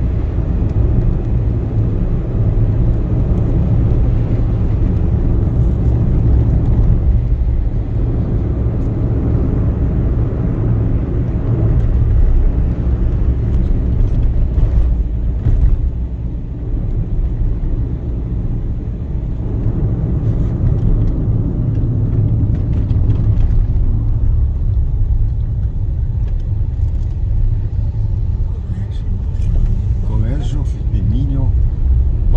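Steady low road and engine rumble inside a moving car's cabin while driving.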